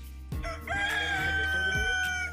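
A rooster crowing once, a long held call that starts under a second in and tails off at the end, over background music with a steady beat.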